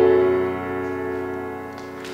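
A pop backing track's final chord held and fading out at the end of the song, with no voice over it.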